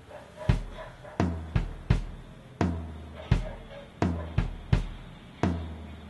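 Soundtrack music opening with drums alone: bass drum and snare hits in a loose, steady beat, about ten strikes starting about half a second in.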